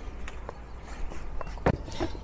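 A handful of light, sharp knocks and taps on a bamboo cutting board as a knife and garlic cloves are handled on it. The loudest knock comes about a second and a half in.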